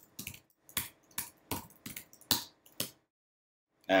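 Computer keyboard typing: a run of single keystroke clicks, about four a second, stopping about three seconds in.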